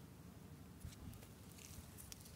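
Near silence: faint outdoor background with a couple of soft ticks about a second in.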